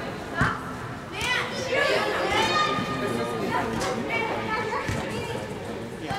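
Young players shouting and calling to one another in an indoor soccer hall, the voices echoing, with the thud of a ball being kicked about half a second in.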